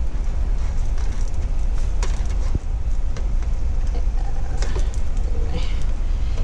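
Steady low rumbling noise, with a few faint clicks about two seconds in.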